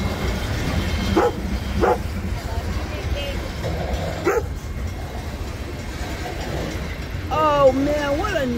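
Freight train rolling past with a steady low rumble, while a dog barks three times in the first half, short sharp barks. A person's voice starts near the end.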